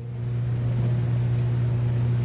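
A steady low hum that swells in the first half second and then holds level.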